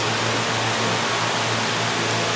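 Steady rushing background noise with a low hum underneath, holding an even level throughout.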